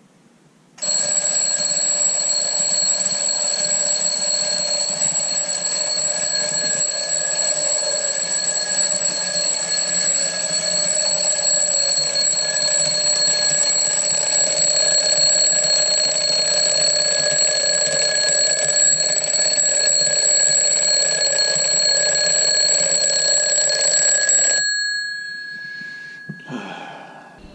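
Twin-bell alarm clock going off: a loud, continuous metallic ringing starts about a second in, holds steady for over twenty seconds, then is cut off suddenly, with one bell tone lingering briefly as it fades.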